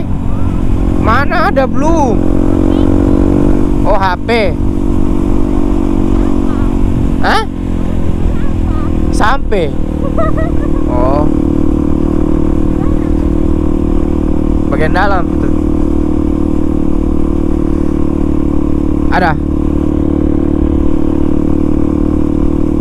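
Yamaha WR155R's single-cylinder engine running steadily at cruising speed, with a brief dip in the engine note about seven seconds in before it settles back to a steady cruise.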